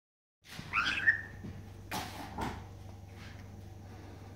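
White-headed caique giving a short whistled call about a second in, followed by two soft knocks about two seconds in, over a steady low hum.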